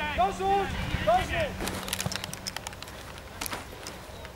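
Shouted calls from football players on the pitch during the first second and a half, followed by a scatter of short sharp clicks.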